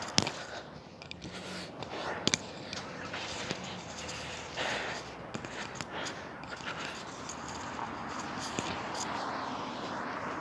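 Handling noise from a phone carried while walking: irregular knocks and rustles against clothing, the sharpest just after the start and about two seconds in, over a steady outdoor hiss that swells slightly near the end.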